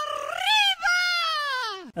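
A drawn-out, voice-like vocal call for the channel intro sting. It rises in pitch, holds, then slides down over more than a second, with a short break about a second in, and cuts off just before the narration resumes.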